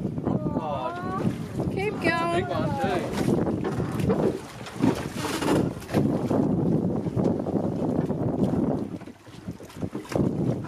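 Wind buffeting the microphone on an open boat, a continuous low rushing noise, with excited voices calling out in the first three seconds.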